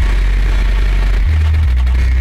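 Electronic synthesizer music: deep sustained bass notes that shift pitch twice in the second half, under a dense layer of static-like noise.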